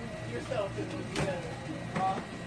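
Indistinct background voices talking over a steady low hum, with a single sharp click about a second in.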